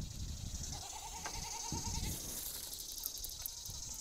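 Outdoor ambience: a steady high insect drone, with one faint, wavering animal call lasting about a second near the start.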